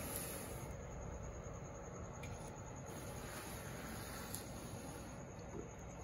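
Faint, steady whir of the small cooling fan in an ADJ Pocket Pro 25-watt LED moving-head light running.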